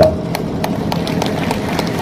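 Scattered hand clapping from an outdoor audience: a string of separate sharp claps at an uneven pace over a steady crowd hubbub.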